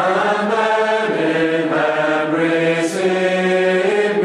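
A group of voices singing a slow hymn in held chords, the notes changing about every second.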